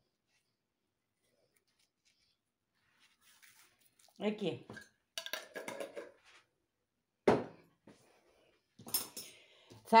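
Silence for the first few seconds, then a few quiet spoken words, a single sharp knock of a kitchen container set down on the counter about seven seconds in, and light handling noise near the end.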